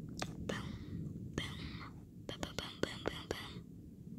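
A person whispering in several short breathy bursts, with a run of sharp clicks in the second half, over a steady low rumble.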